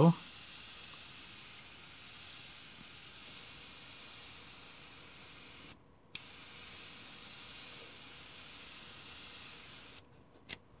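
AK Basic Line 0.3 mm gravity-feed airbrush spraying paint: a steady hiss of air and paint through the nozzle. It cuts off for about half a second some six seconds in, then resumes.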